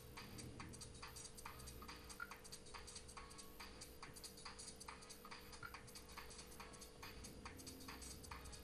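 Near silence: room tone with a faint steady hum and faint, irregular ticks a few times a second.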